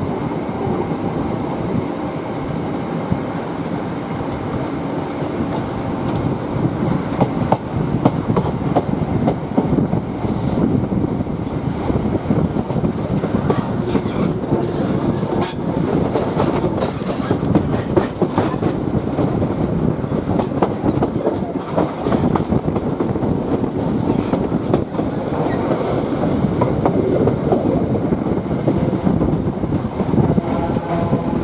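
High Speed Train's Mark 3 coach running out of a station, with a steady rumble. From a few seconds in, the wheels clatter and click over rail joints and pointwork, with a few brief high-pitched wheel squeals midway.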